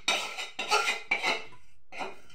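A metal spoon or fork clinking and scraping inside a small bowl as something is stirred or beaten, in repeated strokes about two a second, pausing briefly near the end.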